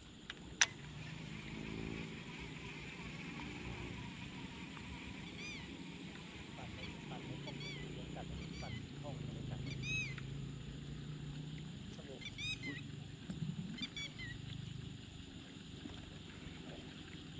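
Faint calls of a bird or birds at dusk: short arched calls, often in quick pairs or threes, recurring about every one to two seconds through the second half. A single sharp click comes just after the start, over a faint low murmur.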